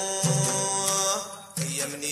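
Sudanese Sufi madeeh, a chanted praise song for the Prophet: voices hold long notes over low strokes, with a brief drop in level about a second and a half in.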